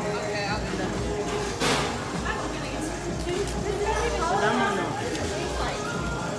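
Background hubbub of several voices talking, with music playing, and one brief sharp noise about one and a half seconds in.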